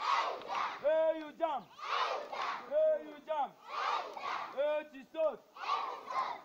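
A group of schoolchildren chanting together in rhythm: a pair of loud "Hey! Hey!" shouts followed by a short sung phrase, repeating about once a second.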